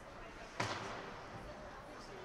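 A single sharp knock about half a second in, with a short echo in the rink hall, over faint arena background noise.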